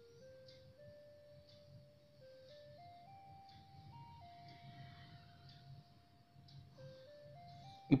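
Quiet background music: a slow, simple tune of single held notes stepping up and down, with one long held note in the middle.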